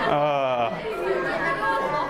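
A man laughing into a microphone, over a room of children chattering.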